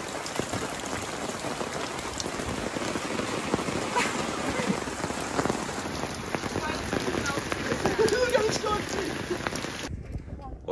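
Steady rain falling on flooded ground and standing water, with a few sharper drop hits in it.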